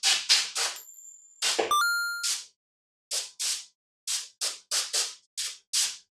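Stream-alert sound effect for a bits cheer: a high electronic beep about a second in, then a ringing chime near two seconds, set among a string of about a dozen short bursts of hiss.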